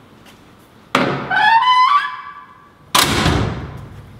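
A Fox-body Mustang's door hinge creaks in a squeal that climbs in pitch for about a second. About two seconds later the door shuts with a loud thunk that dies away quickly.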